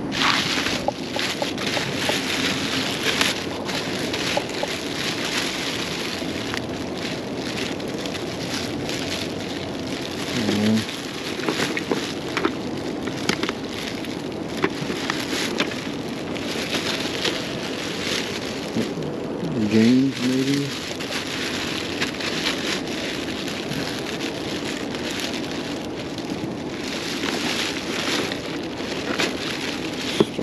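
Thin black plastic trash bags crinkling and rustling steadily as hands pull them open and rummage through them. A voice hums briefly twice, about a third and two-thirds of the way through.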